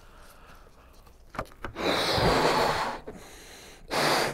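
A man blowing up a rubber balloon by mouth: a quick intake of breath, then a long, forceful breathy blow into the balloon lasting about a second, with another blow starting just before the end.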